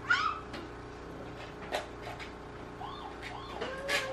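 A young child's high-pitched squeal, falling in pitch, right at the start, then softer wavering baby vocal sounds near the end, with a couple of light knocks from toys in between.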